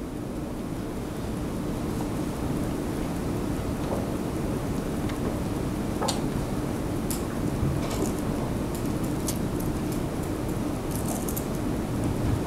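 Steady low room noise with a faint hum, and scattered small clicks and rustles in the second half.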